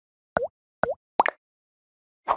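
Three short, bubbly 'plop' sound effects from an animated logo intro, each a quick pitch dip and rise. The third comes as a quick double pop.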